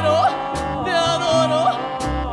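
Recorded music from a small trio with accordion, upright bass and guitar: a voice holds long, wavering notes over bass notes that change about every half second.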